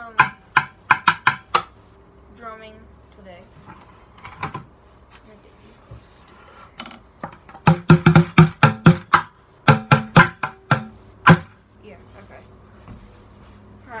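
Wooden drumsticks striking an upturned plastic bucket in short runs of quick hits. There is a handful near the start, then a longer, denser run from about eight to eleven seconds in.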